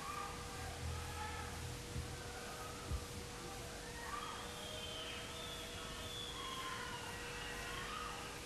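Quiet lull between songs: faint, indistinct voices over a steady electrical hum from the sound system, with one small click about three seconds in.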